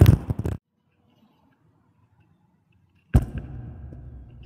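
Microphone handling noise: loud rustling and knocks, then a dead gap where the recording cuts out, then a sharp knock and rustling that fades as the flute is picked up. No flute notes yet.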